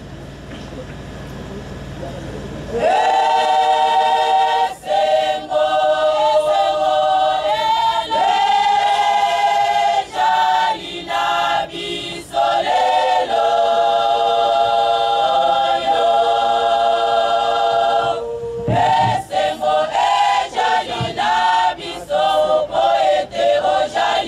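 Women's choir singing, with long held notes; the voices come in about three seconds in after a low hum, and after a short break near the end the phrases turn shorter.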